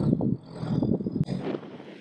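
Sherp amphibious ATV's engine running at low speed as it drives up toward the trailer, uneven in level, with one sharp click a little past halfway; it is quieter near the end.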